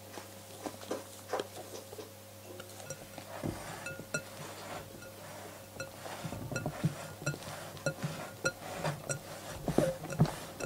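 Silicone spatula folding egg-yolk batter into whipped meringue in a glass bowl: soft wet squelches and scrapes against the glass. The batter is poured in at first, with a few light knocks of glass on glass, and the folding strokes come quicker and louder in the second half.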